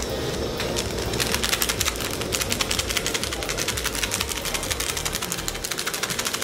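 Fish curry cooking in a metal kadai, crackling with rapid sharp ticks, about ten a second, over a steady hiss.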